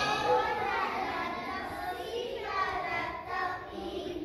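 A large group of young children's voices together in unison, a class chanting or singing a song.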